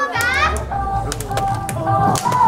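A J-pop dance track's intro starting over a PA: a deep bass and held synth chords come in with a few sharp percussive hits. A short shouted voice rises and falls right at the start.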